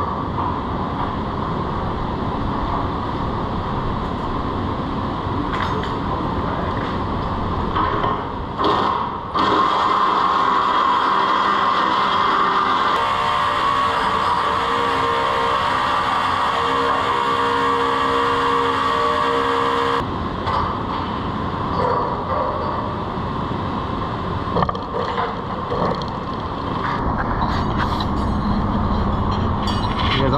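Steady, loud mechanical noise of running machinery, with a pitched machine hum that starts suddenly partway through, runs several seconds and cuts off. A few short knocks come through it.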